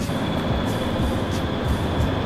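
Music playing from a 15-inch M2 MacBook Air's built-in speakers outdoors, under a steady rushing background noise.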